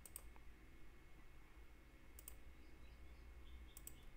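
Three computer mouse clicks: one at the start, one a little after two seconds and one near the end. The last two are each a quick double snap. Under them is a faint, steady low hum.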